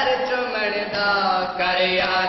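Male voices chanting a noha, a Shia mourning lament, in long held sung lines into a microphone.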